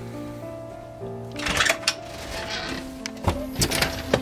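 Background music with held notes over an aluminium screen door being handled: a rattle about a second and a half in, then a few sharp clicks a little after three seconds as the door latches.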